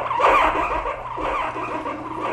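A recorded sound file played back through the Ounk audio engine, which runs on Csound. A new copy starts every second, so the copies pile on top of one another into a dense, rough texture.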